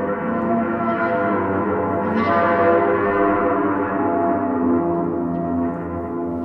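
A yaybahar, an acoustic instrument whose strings are coupled through long coiled springs to frame drums, being played: several sustained tones sound together with a metallic, gong-like ring, and a brighter note enters about two seconds in.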